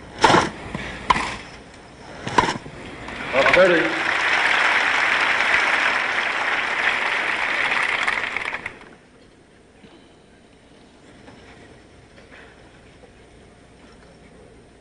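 Three sharp tennis racket strikes on the ball in a rally, then a brief voice and about five seconds of crowd applause that cuts off suddenly.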